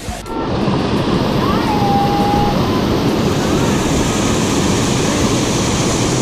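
Small waterfall cascading over boulders into a rock pool, heard close up as a loud, steady rush of water. It comes in abruptly just after the start.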